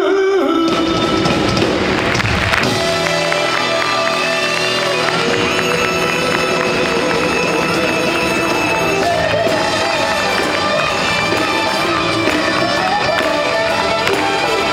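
Live band music with drums, bass, congas and a brass section, playing a sustained passage. A noisy wash sits over the first two seconds or so, then the music carries on steadily.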